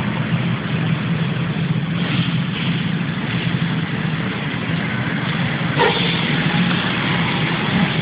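Steady street traffic noise with a car engine running nearby, a continuous low hum under an even rush, and a short louder noise about six seconds in.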